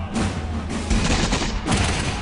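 A ragged volley of flintlock musket fire, several shots close together, over a background music score.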